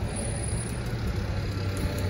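A steady, low engine drone.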